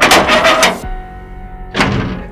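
A quick run of about five loud knocks or bangs on a metal gate, then one more near the end, over soft background music.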